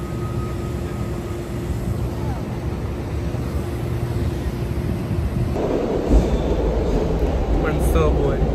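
City street traffic noise with a steady hum. About five and a half seconds in, it gives way to a louder, deeper rumble.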